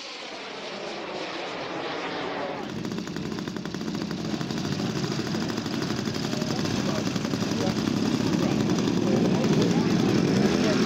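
Engine of a giant-scale model WW1 biplane running close by, a rapid, even firing rattle that sets in about three seconds in and grows steadily louder. Before it, a pitch glides briefly.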